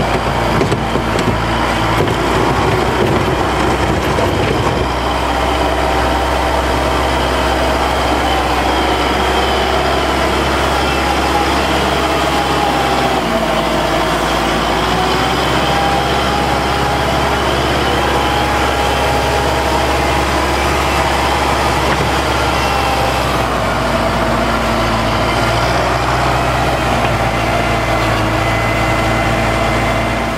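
Kubota tractor's diesel engine working steadily under load as its winged Arctic poly plow pushes a large pile of wet, heavy snow, the engine note shifting a couple of times along the way.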